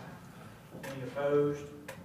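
A person's voice speaking briefly, the words not made out, with a sharp click just before the end.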